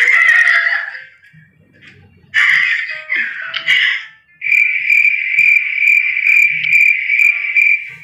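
Cricket-like chirring, a steady high tone with a faint rapid pulse, setting in about halfway through after a few short noisy bursts.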